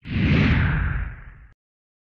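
Logo-reveal whoosh sound effect with a deep low rumble. It starts suddenly, its upper part slides down in pitch, and it fades over about a second and a half before cutting off.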